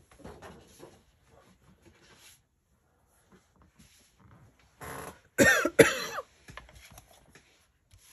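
A woman coughing, a short loud burst of coughs about five seconds in, with faint paper rustling before it.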